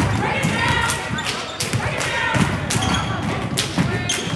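Several basketballs bouncing on a gym floor, sharp thuds at irregular spacing, over the chatter of voices.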